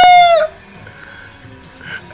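A man singing the last note of a "la, la, la" phrase: a high, loud held note that sags slightly and breaks off about half a second in, leaving only faint background.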